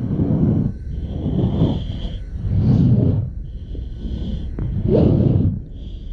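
Heavy breathing through a full-face gas mask, about one breath every two and a half seconds: a deep rush of air alternating with a high, steady hiss.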